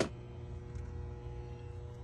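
Quiet steady background hum with a few faint steady tones; no distinct event.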